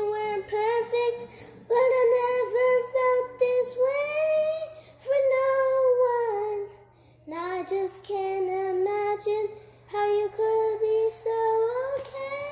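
A young girl singing a slow ballad melody unaccompanied, in phrases of long held notes with short breaks between them and a brief pause about seven seconds in.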